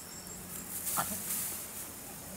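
A young chimpanzee gives one short, high squeak about a second in while play-wrestling, amid a brief burst of hiss.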